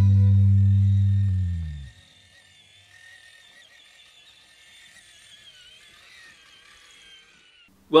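A sustained low note of background music fades out over the first two seconds. Then the faint high whine of a Traxxas TRX-4 crawler's electric motor and drivetrain running on rubber tracks, wavering in pitch.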